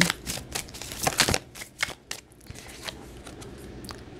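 Tarot cards being handled: a quick run of flicks, taps and rustles in the first two seconds, thinning out after.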